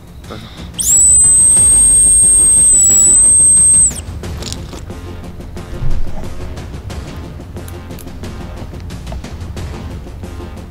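A loud, shrill whistle blast held for about three seconds, starting about a second in and cutting off sharply. Background music follows, with a short thump near six seconds.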